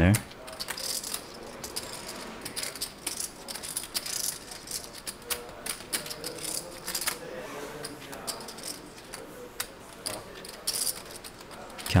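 Poker chips clicking in quick, irregular runs as a player handles and counts down his stack at the table.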